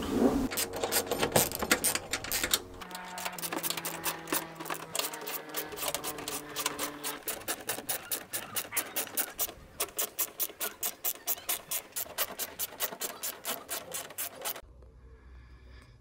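Hand screwdriver turning screws into a metal engine-bay cover panel: a fast, regular rasping click, several strokes a second, which stops shortly before the end.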